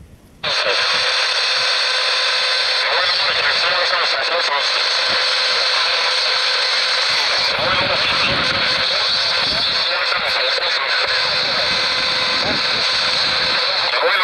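Shortwave world receiver tuned to 7.085 MHz: the audio, muted during the tuning step, comes back about half a second in. A broadcast voice then plays through the radio's small speaker, buried in steady static and hiss.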